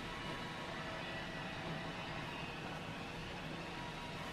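Steady background hiss with a faint hum and no distinct events: room tone.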